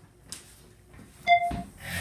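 A short electronic beep about a second and a quarter in, followed at once by a heavy thump, the loudest sound here, and then a brief rush of noise near the end.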